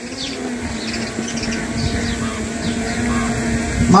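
Birds chirping in short, falling high calls over a steady low hum and a low rumbling background.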